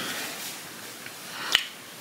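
A single short, sharp click about one and a half seconds in, over quiet room hiss.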